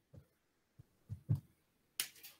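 Faint, soft low thuds of a marker working on a whiteboard: a couple of light taps, with two stronger ones close together a little past the middle.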